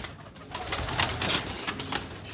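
Domestic pigeons taking off from their loft: a quick run of wing claps and flutters starting about half a second in.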